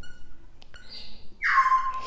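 Dry-erase marker writing on a whiteboard: faint scratchy strokes, then a squeak that slides down in pitch and holds steady near the end.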